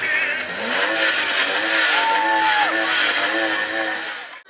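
A car engine revving: its pitch climbs over the first second, then holds and wavers.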